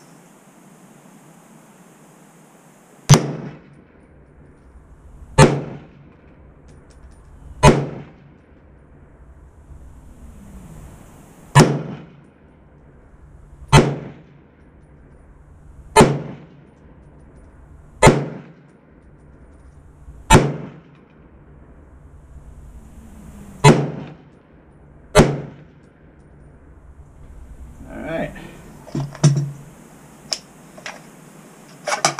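Ruger SFAR semi-automatic .308 rifle firing ten single shots, each a sharp report with a short ringing tail. The shots are spaced about two seconds apart, with longer pauses after the third and the eighth. Near the end comes the softer clatter of the rifle being handled.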